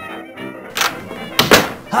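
Two sudden thuds about 0.7 s apart, the second louder, as a door is opened and banged shut, over background music.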